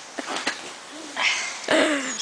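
Short, broken voice sounds and a breath, with a couple of faint knocks early on; the clearest is a short vocal sound with a falling pitch near the end.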